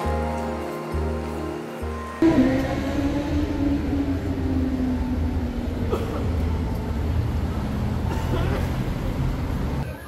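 Background music with a steady bass beat, which cuts off about two seconds in. Busy city street noise follows: traffic and passers-by, with a loud low rumble.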